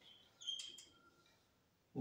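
Faint squeak of a dry-erase marker on a whiteboard as a circled numeral is written, starting about half a second in and lasting about half a second.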